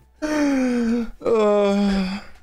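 A man's voice drawing out two long, moan-like vowel sounds of about a second each, the first sliding slightly down in pitch, the second lower and held level.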